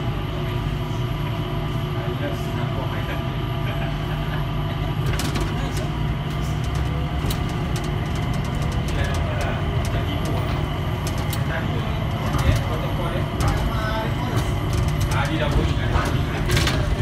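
Changi Airport Skytrain car running along its guideway, heard from inside the car: a steady low rumble, with scattered light clicks and rattles from about five seconds in.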